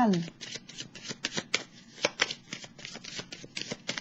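Tarot cards being shuffled by hand: a quick, irregular run of light card clicks and flutters.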